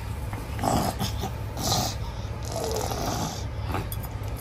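Breathy, snuffly sounds from a person close to the microphone: a short one about half a second in, another just before two seconds, and a longer one around three seconds. A steady low hum runs underneath.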